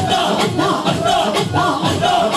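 Sufi devotional music: a crowd of men chanting and singing together over a steady driving beat of about three strokes a second, with sharp claps in it.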